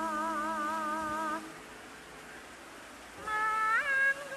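Javanese gamelan vocal music for a bedhaya court dance: a singer holds a wavering note with steady vibrato over a low sustained tone, breaking off about a second and a half in. Near the end a new sung phrase begins with an upward slide.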